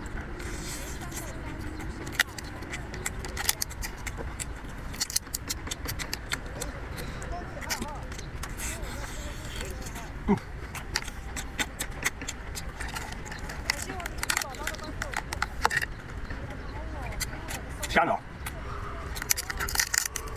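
Cooked lobster and crayfish shells being cracked and peeled apart by hand, with chewing, as a string of small crackles and clicks over a steady low rumble.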